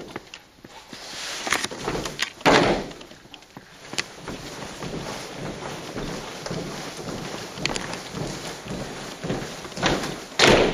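Cadet drill squad's boots stamping in unison: one heavy stamp about two and a half seconds in and another near the end, with a few lighter sharp clicks between.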